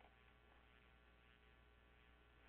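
Near silence: a faint steady electrical hum in the recording.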